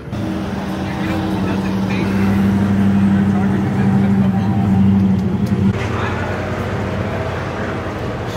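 A car engine running at a steady speed with an even low hum, which stops abruptly a little before six seconds in.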